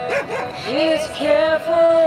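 A dog barks briefly at the start, then a sung melody over music continues from a Bluetooth karaoke microphone's speaker.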